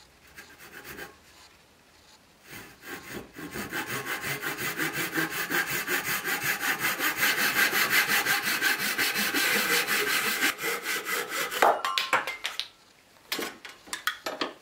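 Fine-toothed hand saw cutting through a turned wooden piece held in a vise. A few short strokes and a pause come first, then fast, steady strokes, about five a second. They stop suddenly with a sharp knock, followed by a few lighter knocks near the end.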